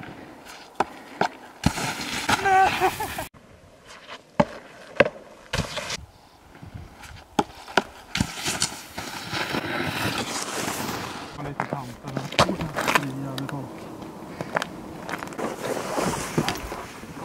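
Snowboard scraping and landing on packed snow, with scattered sharp knocks and clicks, and a brief shout about two and a half seconds in. A low steady hum comes in near the end.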